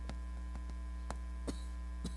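Steady electrical mains hum, with a few short taps and scrapes of chalk on a chalkboard as words are written.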